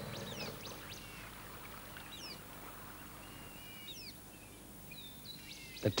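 Several small birds calling: short whistled chirps and quick falling and rising notes, scattered and faint over a soft background hiss.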